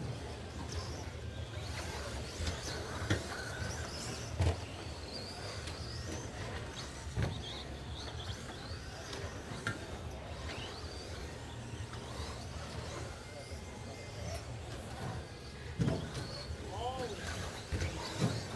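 Electric RC short-course trucks racing on an indoor carpet track: high motor whines rising and falling as they speed up and slow down, with a few sharp knocks, over steady hall noise.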